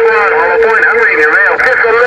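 A distant station's voice coming in over an HR2510 radio's speaker on 27.085 MHz, garbled and squeezed into a thin high band, with a steady whistle underneath that stops just before the end.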